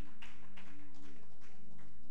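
Soft church music playing: sustained keyboard chords held steady, with light percussion taps about three a second.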